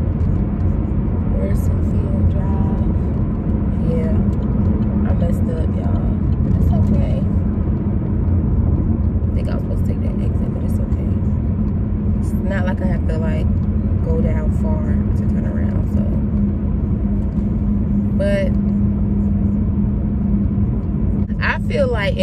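Steady low road and engine rumble of a car being driven, heard inside the cabin, with a constant low hum.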